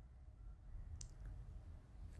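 Very quiet room tone with a faint low hum, and a single faint click about a second in.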